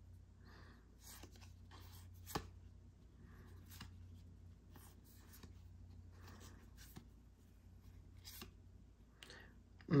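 Pokémon trading cards being handled and flipped through: soft scrapes and taps of card stock, roughly one a second, with one sharper click about two and a half seconds in.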